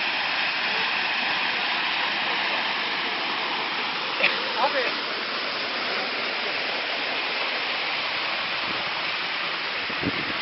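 Water gushing and spraying out of a freshly drilled water-well borehole at a drilling rig, a steady rushing hiss: the well has struck water.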